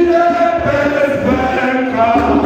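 A crowd of men and women singing an anthem together without words being spoken, in long held notes that step from one pitch to the next.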